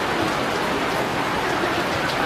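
Steady rain, falling on a fabric canopy overhead and on the surroundings.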